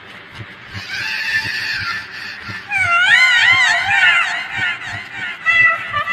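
Cartoon animal cries from a nursery-rhyme animation: high warbling calls come in about three seconds in, with shorter repeated calls near the end, over a steady low beat.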